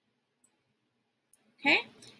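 Near silence, then a single short click a little over a second in: a computer mouse click.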